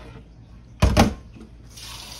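Stainless steel kitchen tongs knocked down onto a wooden cutting board: two sharp knocks close together about a second in. Near the end a steady rush of running tap water begins.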